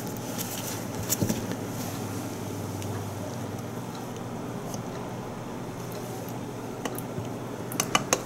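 Ketchup being poured from a bottle into a plastic measuring cup: soft squelches and a few light handling clicks over a steady low room hum.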